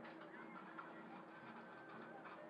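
Near silence: faint outdoor background with a thin, distant whine that glides up early on and then holds steady.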